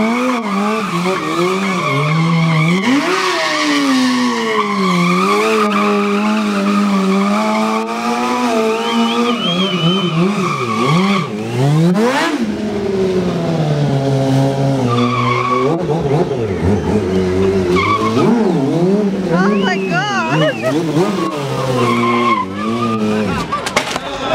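Streetfighter stunt motorcycle's engine revving up and down over and over, with long tyre squeals as the tyre slides on the asphalt during the stunts.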